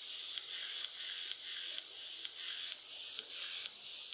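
Music playing through a pair of bare Koss KSC-75 headphone drivers fed by a Bluetooth module, heard thin and hissy with almost no bass, with a regular beat. This is a test that both drivers work after being resoldered to the module.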